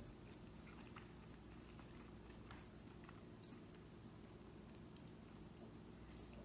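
Near silence with faint chewing of a mouthful of fusilli pasta and vegetables: a few soft mouth clicks over a low steady room hum.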